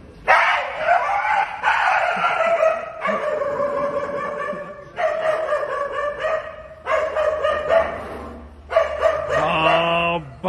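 Dogs howling at a monkey in long drawn-out calls, about five in a row, each lasting a couple of seconds.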